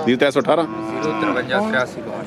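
A cow or bull mooing once: a single long, steady call of about a second, starting just under a second in and dropping in pitch at the end.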